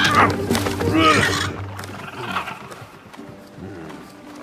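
A bird's harsh squawks, loudest about a second in and fading soon after, over background music.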